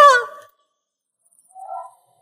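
A woman's loud, pained cry trailing off within the first half second, followed by dead silence and a brief faint tone near the end.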